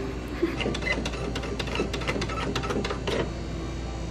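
Self-checkout kiosk's thermal receipt printer feeding out a receipt: a steady run of fast, irregular mechanical clicks.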